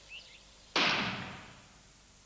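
A single rifle shot about three quarters of a second in: a sharp crack that dies away over most of a second.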